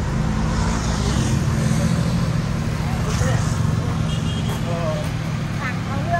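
A vehicle engine idling steadily with a low, even hum, with faint voices over it.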